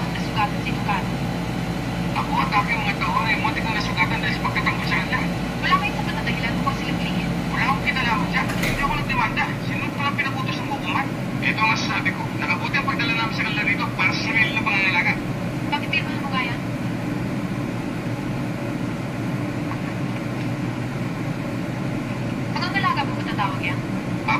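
Dialogue from an old film over a steady background hiss. A low hum drops out about nine seconds in, and the talking pauses for several seconds before resuming near the end.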